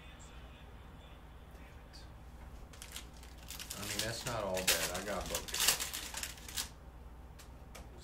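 A foil Panini Prizm UFC hobby pack wrapper being torn open and crinkled by hand, a burst of crackling that starts about three seconds in and lasts a few seconds, loudest near the middle.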